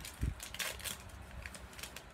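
Foil Pokémon booster pack wrapper crinkling as it is handled, in a few short crackles.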